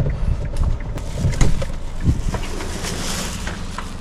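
A few knocks and handling noises as a person climbs out of a car, with a steady low wind rumble on the microphone.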